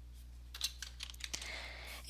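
Computer keyboard typing: a quick run of faint key clicks starting about half a second in, over a steady low hum.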